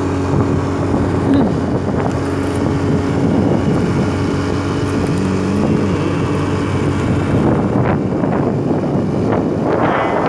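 Motorcycle engine running at a steady road speed, with wind rushing over the microphone. The engine note briefly rises and falls about five seconds in.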